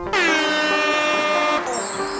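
A horn sound effect laid over the edit: one long blast with a slight dip in pitch at the start, held for about a second and a half, over background music. A high, bright effect comes in near the end.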